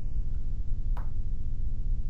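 Steady low background hum, with a single short click about a second in.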